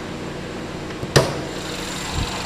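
A single sharp metallic clunk about a second in, with a small click just before it, as the hood of a 2017 GMC Terrain is unlatched and raised. A steady low hum runs underneath.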